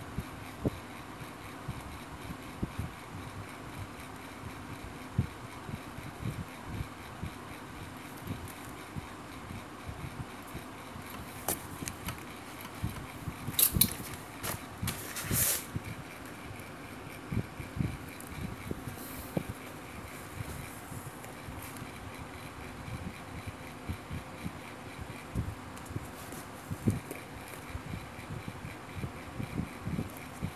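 Soft handling noise from hand-sewing fabric with a needle and thread: light rustles and small knocks, over a steady faint hum. Two louder rustles come about halfway through.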